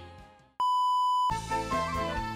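Music fades out, then a single loud, steady electronic beep sounds for under a second and cuts off as a different music track starts.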